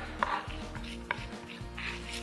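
A chef's knife pressing and scraping salted garlic into a paste on a plastic chopping board: a few soft knocks and scrapes about a second apart. Quiet background music plays underneath.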